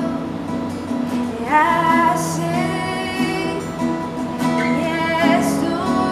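A woman singing a worship song to her own strummed acoustic guitar; about a second and a half in, her voice slides up into a long held note.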